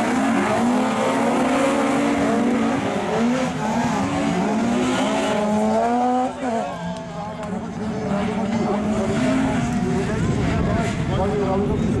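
Rallycross cars racing, engines revving up and falling back again and again through gear changes, with the sound dipping briefly about halfway through.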